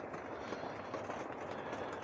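Quiet, steady background hiss with no distinct events: the ambience inside a closed camper shell on a rainy night, with a diesel heater running.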